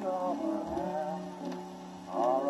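A 1927 Victor 78 rpm shellac record playing through an Orthophonic Victrola's reproducer and horn: an instrumental passage of the dance-band accompaniment, a wavering melody line over sustained lower notes.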